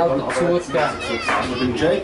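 Voices at an under-10 football match: people talking, with children's high-pitched shouts rising and falling around the middle.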